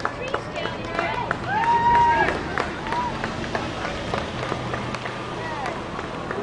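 Children's high voices calling out and cheering, the loudest a long held call about two seconds in, over scattered sharp taps.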